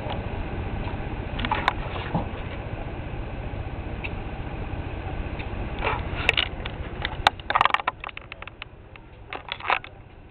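A chipmunk rustling inside a plastic trash bag: scattered bursts of crackling over a steady low rumble that cuts off about seven seconds in.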